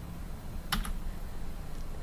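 A quick double click about a second in, a computer key being pressed to advance the presentation slide, over faint room tone with a low hum.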